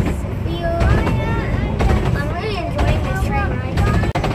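A child talking over the steady low rumble of a moving narrow-gauge railway carriage.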